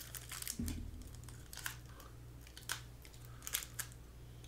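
Foil trading-card pack wrapper crinkling and crackling in fits as it is handled and opened.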